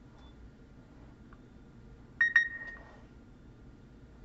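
A short, bright electronic beep of two quick pulses about two seconds in, fading within about half a second, over faint room tone with a thin steady high whine.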